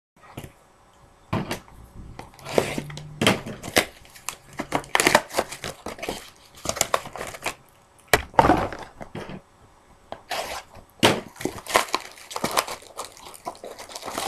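Hands tearing open a cardboard trading-card box and its wrapping: irregular rips, crinkles and rustles, some sharp and loud, with short pauses between.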